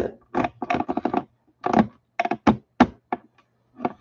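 Handling noise from the webcam being moved and repositioned: a string of about a dozen short, irregular clicks and knocks.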